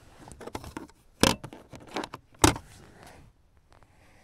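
A hand handling and knocking on the car's interior plastic trim around the rear console sockets. There are two sharp knocks about a second apart, with lighter clicks and rustling between them.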